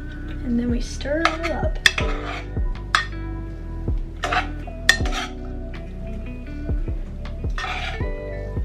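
A utensil stirring and tossing pasta in a saucepan, with several short bursts of scraping and clinking against the pot, over background music with a steady beat.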